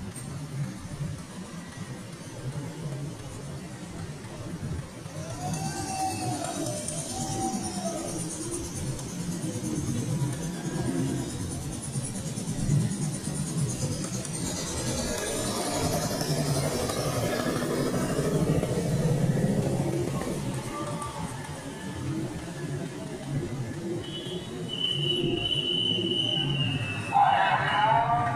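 Street traffic with motorcycles passing, a steady rumble that grows louder through the middle, with music playing and faint voices.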